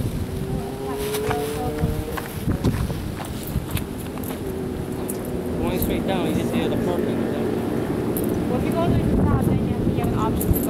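People talking some way off the microphone, over a steady engine hum that rises slightly in pitch during the first two seconds.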